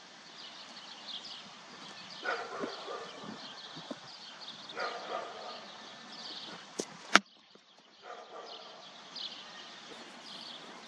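A cricket bat striking a leather cricket ball: a single sharp crack about seven seconds in, just after a lighter click. Birds chirp throughout.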